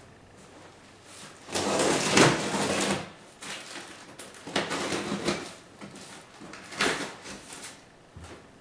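Packing tape being torn and cardboard flaps handled on the top of a large cardboard box: a long tearing noise from about a second and a half in, then two shorter bursts around the middle and near the end.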